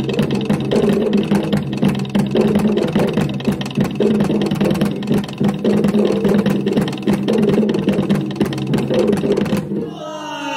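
Live traditional Bugis ensemble music with rapid, dense drumming over a steady low tone.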